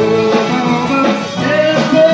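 Rock band playing in rehearsal, guitar to the fore with a singing voice, heard from a demo cassette tape recording with the top end cut off.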